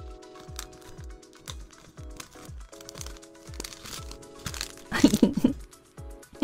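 Clear plastic bags and bubble wrap crinkling as small packaged keychains are handled, over background music with a steady kick-drum beat. A louder burst of sound comes about five seconds in.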